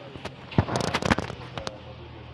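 A rapid, irregular series of sharp cracks and pops, the loudest about half a second and a second in, over a steady low hum.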